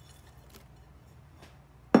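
A few faint taps of sliced onion pieces dropping from a bowl into a slow cooker, then one sharp dish clack near the end.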